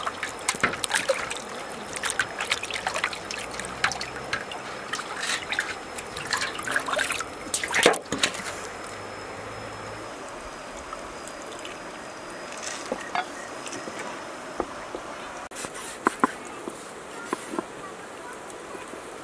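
Water splashing and sloshing in a stainless steel basin as hands scrub a slab of pork belly, busy for about the first eight seconds. After that, quieter steady running water with a few small knocks.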